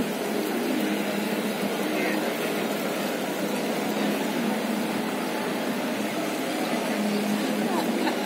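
Busy city street ambience: a steady hum of traffic with faint, overlapping chatter of passers-by.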